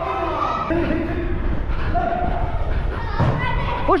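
Indoor small-sided football: players' voices calling out and echoing in a large hall over the low rumble and thuds of the camera wearer moving about, with one louder thud a little after three seconds in.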